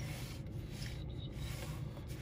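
Pencil lead scratching faintly on paper in a few short strokes, drawing straight lines along a metal ruler.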